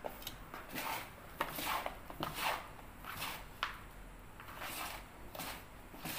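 Hands stirring and turning a dry potting mix of soil and rice hulls in a plastic basin: irregular rustling, scraping strokes, a couple a second, with a few sharp clicks.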